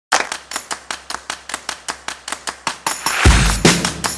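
Background music: a quick, even run of sharp percussive ticks, about five a second, builds into a swell, then a heavy bass and drum beat drops in a little after three seconds.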